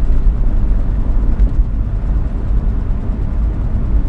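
Cabin noise of an older car driving along: a steady, loud, low engine and road rumble.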